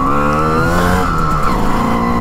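Simson moped's two-stroke single-cylinder engine pulling away under throttle, rising in pitch over about the first second and then levelling off.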